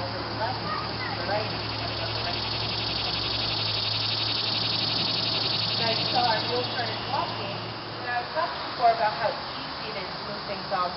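A cicada's buzzing call, swelling over several seconds and fading about seven seconds in, over distant voices and a low steady hum that stops near the end.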